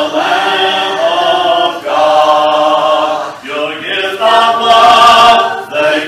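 Church congregation singing a hymn a cappella, many voices together without instruments, in long held phrases with short breaths between them.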